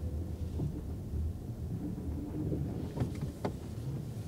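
Low, uneven rumble of road and tyre noise heard inside the cabin of a 2024 Lexus RX350h rolling slowly, with two short clicks about three seconds in.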